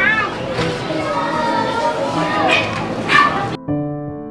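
Busy street ambience with children's voices and short high-pitched calls; about three and a half seconds in it cuts off abruptly and soft piano music takes over.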